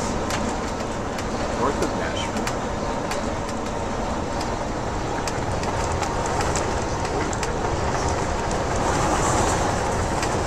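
Steady road noise inside a moving bus at highway speed: a continuous drone of engine and tyres, with frequent sharp clicks and rattles from the cabin.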